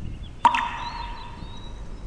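A single sharp hit about half a second in, then a ringing tone that fades away over about a second: a dramatic sound-effect sting.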